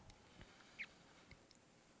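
Near silence: room tone, with a few faint ticks and one faint short squeak a little under a second in.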